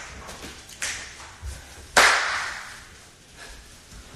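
Two sharp smacks about a second apart, the second much louder and ringing out briefly in a large room.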